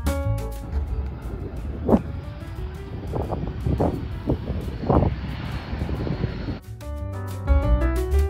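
Wind buffeting the microphone, a rumbling noise with several stronger gusts, heard between stretches of piano background music. The music cuts out within the first second and comes back more than a second before the end.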